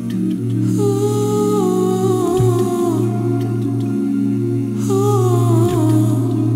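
Male a cappella vocal group singing: voices hold a sustained low chord while a lead voice sings a phrase that steps downward in pitch, twice.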